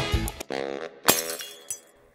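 A short held musical note, cut off a little over a second in by a glass-smashing sound effect, with a brief tinkle of shards after it that fades away.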